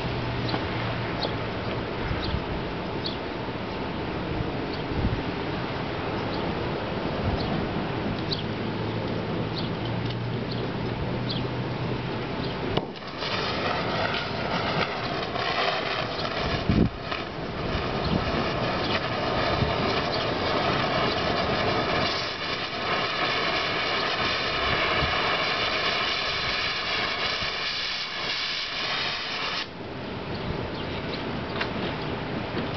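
Oxyacetylene cutting torch: a loud steady gas hiss starts about 13 seconds in, with one sharp pop a few seconds later as the flame burns. It carries on until it cuts off abruptly near the end. Before it starts there is only faint outdoor background noise with light ticks.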